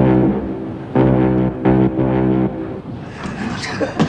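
A Clyde puffer's steam whistle blown as a wee tune in three blasts, the first the longest.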